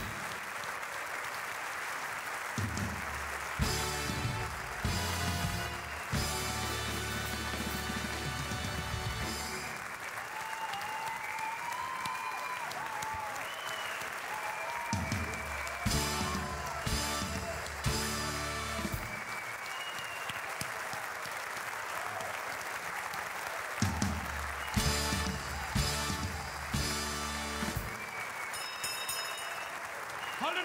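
A large hall audience applauding continuously while a band plays loud music with a strong, rhythmic beat.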